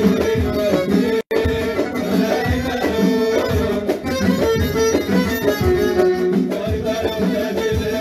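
Live band playing an instrumental passage: violin and accordion melody over a steady drum beat. The sound cuts out for an instant about a second in.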